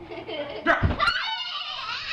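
A thump about a second in, then a child's high-pitched squeal that rises and falls.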